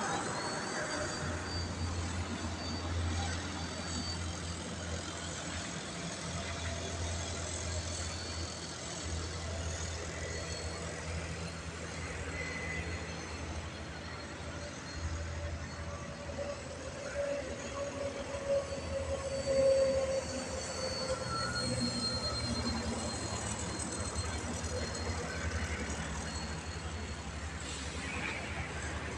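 Radio-controlled Extra aerobatic model plane in flight, its motor and propeller droning and changing pitch as it manoeuvres, loudest on a pass about twenty seconds in.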